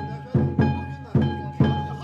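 Kiriko festival music: a taiko drum struck about twice a second, each beat ringing out, over a held high note from a flute or gong.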